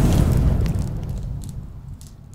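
Deep cinematic boom and rumble from an outro logo sting, fading steadily over about two seconds.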